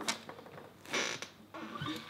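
Flamenco guitar strummed softly twice, about a second apart, the strings ringing briefly after each stroke.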